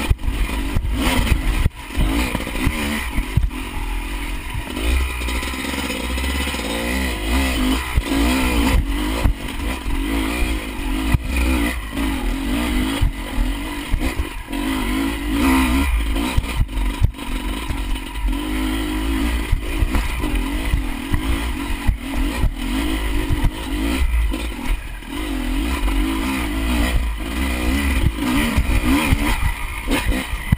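Enduro motorcycle engine revving up and down with the throttle as the bike is ridden over rough ground, heard close up from on the bike. Frequent knocks and rattles from the bike bouncing over the terrain run through it.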